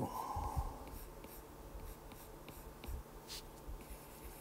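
Stylus tapping and stroking on a tablet's glass screen while drawing lines, heard as a few faint light ticks.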